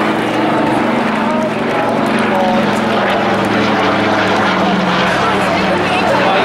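Twin piston-engine propeller aircraft passing overhead, its engines giving a steady drone, with spectators' voices over it.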